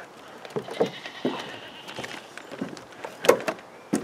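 Irregular knocks and clatters, the loudest about three seconds in.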